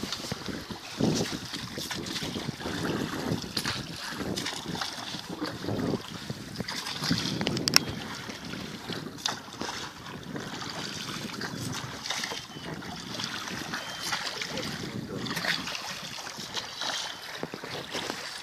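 Wooden rowboat being rowed with long oars: water swishes with the strokes every few seconds and a few sharp wooden knocks, over wind on the microphone and lapping waves.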